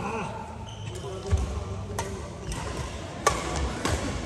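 Badminton rackets striking a shuttlecock in a rally: sharp cracks every half second to a second, the loudest about three seconds in, with low thuds of players' feet on the court.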